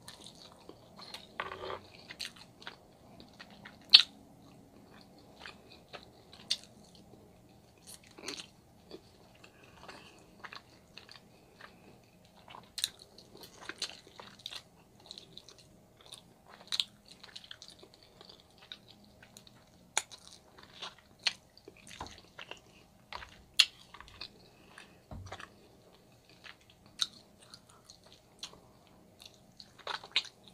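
Close-up mouth sounds of a person biting and chewing meat off ribs, with irregular sharp clicks and smacks throughout; the sharpest comes about four seconds in.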